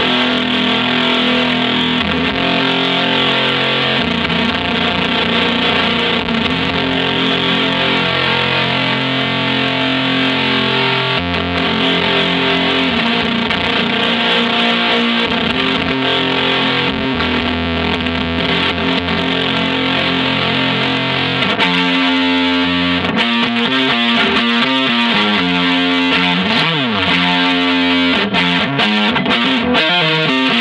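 Electric guitar played through the Chase Bliss Audio / ZVEX Bliss Factory, a two-germanium-transistor fuzz pedal: distorted, sustained chords held a few seconds each. From about two-thirds of the way in the sound turns choppy and stuttering, with a swooping pitch glide near the end.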